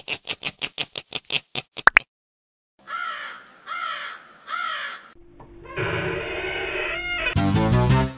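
A witch-style cackling laugh, "ho ho ho ho ho", in rapid pulses that stop about two seconds in. After a short silence come three harsh crow caws, then music fades in and turns loud with a beat near the end.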